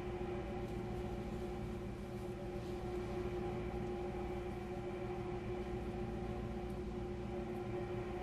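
Faint steady hum with a constant tone, holding unchanged throughout; no distinct handling sounds stand out.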